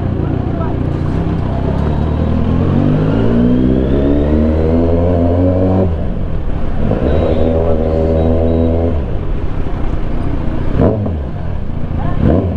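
Kawasaki Z900's inline-four engine pulling at low speed: its pitch climbs steadily for a few seconds, drops sharply about six seconds in, then holds level for a few seconds before easing off.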